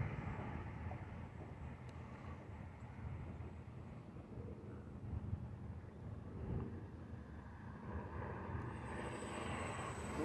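Faint drone of a HobbyZone Carbon Cub S+ electric RC plane's motor and propeller flying at a distance, over a low outdoor rumble, growing a little louder near the end as the plane comes closer.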